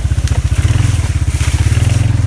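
Four-wheeler (ATV) engine running steadily as the machine drives along, a rapid low pulsing. From about a third of a second in, brush scrapes against the machine as it pushes through.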